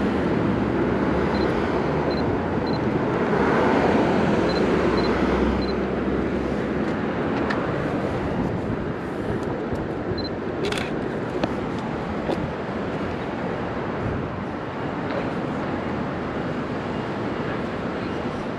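City street traffic noise, swelling as a vehicle passes a few seconds in. About halfway through, a Canon ELAN 7 film SLR's shutter fires once with a sharp click.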